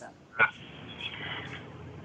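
Faint hiss of an internet video-call line with one short clipped blip about half a second in, the kind of garbled sound a faltering connection gives.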